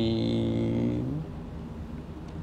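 A man's voice holding one long, low, steady vowel for about a second, then faint room tone.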